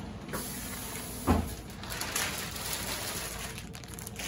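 Clear plastic liner being pulled out from under a sign's applied sheeting, rustling and crinkling, with one sharp thump about a second in.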